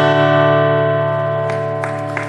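Acoustic guitar's last strummed chord ringing out and slowly fading as the song ends, with applause starting to come in about three-quarters of the way through.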